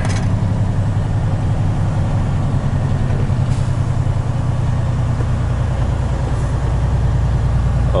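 Semi truck's diesel engine running at low speed while the truck creeps along, heard from inside the cab as a steady low drone. About five seconds in, the engine note drops lower.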